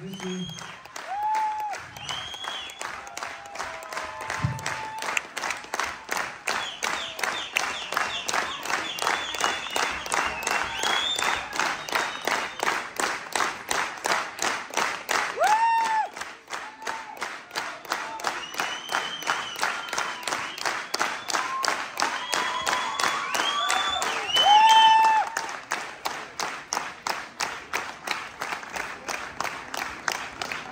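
Concert audience clapping together in a steady rhythm, about two to three claps a second, with a few short shouts from the crowd rising above it.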